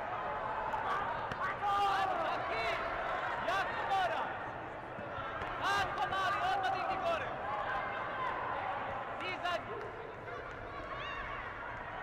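Several voices calling and shouting over one another during a taekwondo bout, with scattered sharp thuds of kicks and feet striking, several seconds apart.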